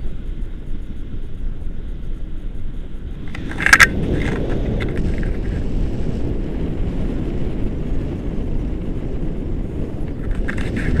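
Wind rushing over an action camera's microphone in flight under a paraglider, a steady low rumble that grows louder about three and a half seconds in. Near that point there is a brief sharp rustle or knock, the loudest moment.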